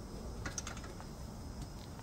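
A few light metallic clicks in the first half as a 13 mm spanner tightens the 8 mm locking bolt on a stretcher's swivel caster.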